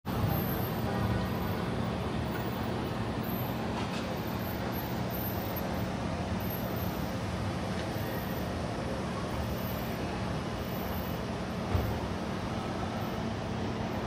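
Steady outdoor traffic and idling-vehicle noise around a hotel valet driveway, with a low steady hum underneath. A single short thump near the end.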